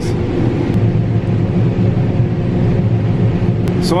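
John Deere combine harvester running, heard from inside its cab while its unloading auger unloads shelled corn into a grain cart on the go: a loud, steady low drone with a constant hum above it.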